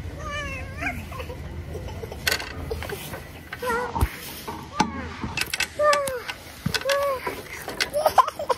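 A toddler's short high-pitched babbling calls, about six of them, each rising and falling in pitch, mixed with a few sharp knocks of the phone being handled.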